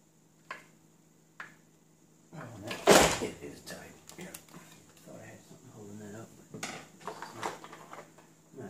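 Hands and a screwdriver working on the fork arm of a Meade LX90GPS telescope: two light clicks, then a loud knock about three seconds in, followed by irregular handling and clattering noises.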